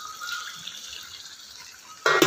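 Faint wet bubbling and hissing of a thick potato curry in the pot as soft fried eggplant slices are tipped into it.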